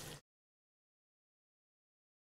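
Faint room tone that cuts off suddenly a fraction of a second in, then complete silence.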